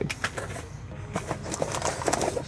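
Packaging being handled: a plastic parts bag crinkling as it is set down on the mat, then hands rummaging in a cardboard shipping box, a run of light crinkles and ticks.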